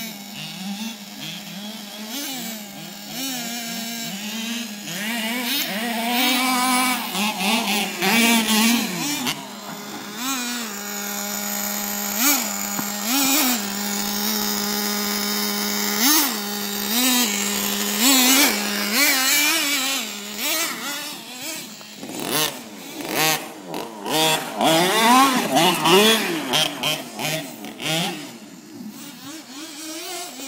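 Traxxas Jato 3.3 radio-controlled truck's two-stroke nitro engine idling and revving over and over, its pitch swooping up and falling back as the truck accelerates and slows. The revving comes quicker and more often in the last third.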